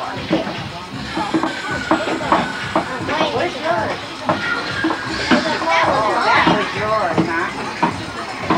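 Overlapping chatter of several children's high voices with adults talking, many people speaking at once so that no single voice is clear.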